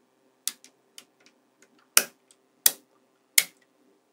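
Small neodymium magnetic balls clicking as strands of them snap onto a magnetic-ball structure: a few light clicks, then three sharp, loud ones about 0.7 s apart in the second half.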